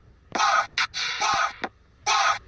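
Raspy, harsh vocal sounds like hoarse crying, looped so that the same pattern repeats every two seconds: two long rasps with short clicks between them.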